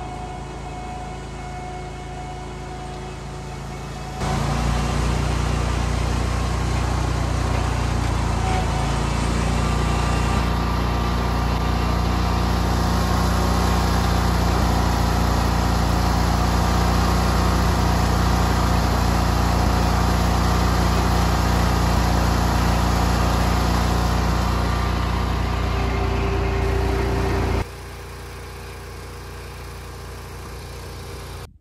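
Small gasoline engine of lawn-care equipment running steadily and loud, cutting in abruptly about four seconds in and cutting off abruptly near the end. A fainter engine hum sits before and after it.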